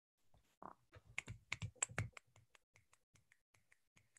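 A few people clapping, heard faintly as sparse, irregular claps through a video call's audio; the claps come thickest in the first couple of seconds and thin out after about three seconds.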